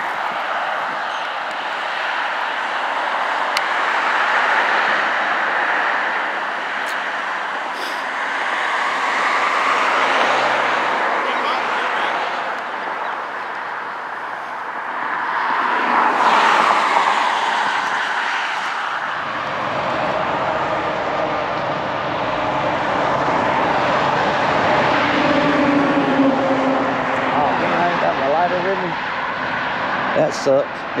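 Road traffic passing on a busy multi-lane road: a steady rush of tyres and engines that swells and fades as cars go by, loudest about halfway through. About two-thirds through the sound turns duller and lower.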